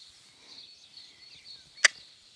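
A single sharp tongue click about two seconds in, a rider's cue asking a young horse to walk off, over a faint steady high-pitched background.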